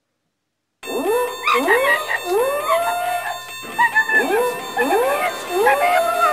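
Silence, then about a second in a run of animal howls starts: many overlapping calls, each rising in pitch and then holding.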